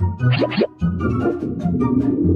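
Cartoon background music with a steady beat. About half a second in come two quick rising pitch sweeps, a cartoon sound effect.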